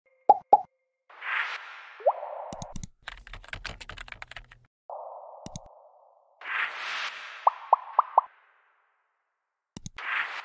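Animated user-interface sound effects: two quick pops, a swish with a rising pop, then a rapid run of keyboard typing clicks about three seconds in. A mouse click follows, then another swish with four quick rising pops, and a click near the end.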